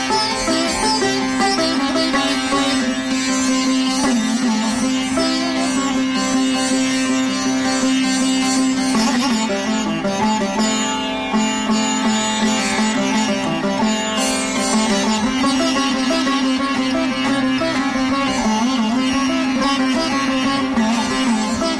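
Sitar playing Raga Bibhas in Hindustani classical style, the melody bending in pitch glides over a steady drone.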